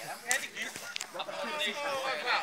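Voices chattering in the background, with two brief sharp knocks, one about a third of a second in and one about a second in.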